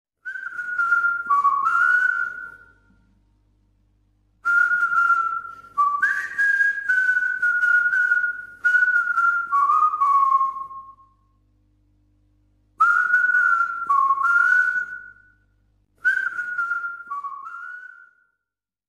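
A person whistling a tune in four phrases with short pauses between them; the notes step up and down within a narrow range.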